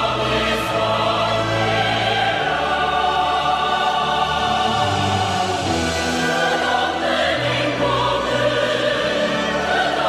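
A choir singing a North Korean choral song with instrumental accompaniment, in long held notes over a bass line that steps to a new note every second or so.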